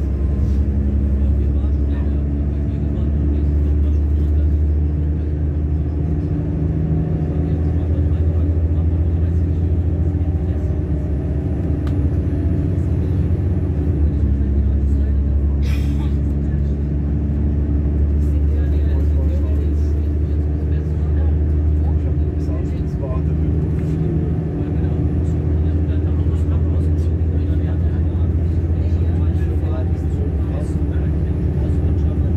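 Steady running rumble of a regional train heard from inside the passenger carriage, with a brief sharp hiss about halfway through.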